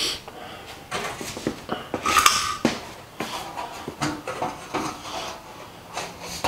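A large sheet-metal panel being handled against a bead roller: irregular knocks and rattles of thin metal, with one louder ringing clang about two seconds in.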